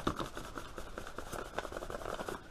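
An empty cardboard parcel box, wrapped in brown paper, being handled and turned over in the hands, making light scraping, rustling and small tapping sounds.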